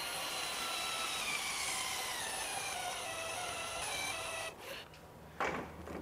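HYTORC Lithium Series II battery torque wrench running steadily as it tightens a 1-1/4 inch fine-thread nut to 1,250 ft-lbs, its motor pitch slowly falling as the load builds, then stopping about four and a half seconds in. A short noise follows near the end.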